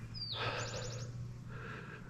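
A bird calling: one falling high note followed by a quick run of about six short high notes, over a faint steady low hum.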